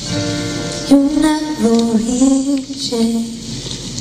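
A young girl singing a slow pop ballad live, accompanied by her own acoustic guitar.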